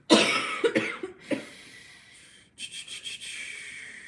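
A person coughing: three harsh coughs, each about half a second apart, right after a laugh, then a quieter hissing breath-like noise near the end.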